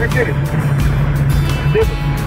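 Mercedes-Benz 310D van's diesel engine running on the move, heard inside the cab as a steady low drone, with music playing over it.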